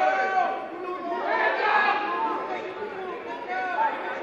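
Spectators and team members in a gym talking and calling out over one another, several voices at once, with the echo of a large hall.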